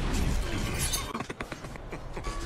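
Horror-film soundtrack: dark music over a low rumble, with a crash and a run of sharp clatters and clicks, like breaking glass, about a second in.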